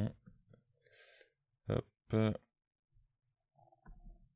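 A man's voice making two short mumbled syllables about two seconds in, with faint scattered clicks around them.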